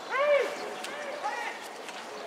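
A voice shouting a long call that rises and falls in pitch, the loudest sound, then a shorter call about a second later, over a murmur of background voices in a baseball ground.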